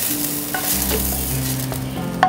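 Sausages sizzling as they fry in a frying pan: a steady hiss of hot oil.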